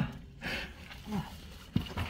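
A man's short, low effort grunts and breathing, from straining to squeeze through a tight rock passage where he is getting stuck, with a single click near the end.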